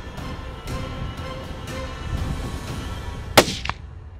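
A single rifle shot about three and a half seconds in: one sharp, loud crack followed a fraction of a second later by a fainter second crack. It is the shot that drops the mule deer buck.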